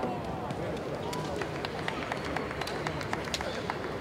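Scattered sharp taps from a kendo bout, bamboo shinai knocking and bare feet on the wooden floor, over the murmur of a large hall.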